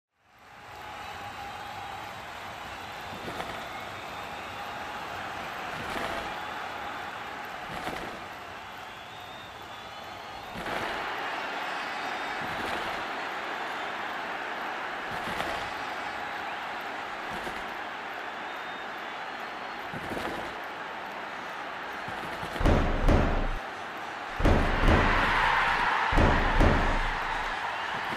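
Title-sequence soundtrack: a steady whooshing, hissing bed with soft hits every couple of seconds, swelling about ten seconds in, then several heavy, deep booming hits near the end.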